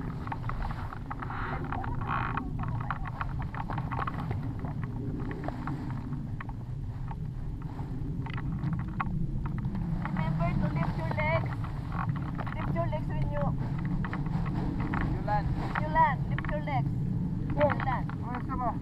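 Low, steady rumble of wind buffeting the camera microphone, with voices calling out several times in the second half.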